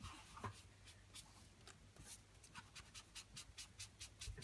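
Faint dabbing and rubbing of a foam sponge on paper as ink is sponged onto a card label, heard as a series of short soft strokes.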